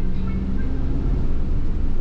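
Steady low rumble of a car's engine and tyres on the road, heard from inside the cabin while driving at steady speed.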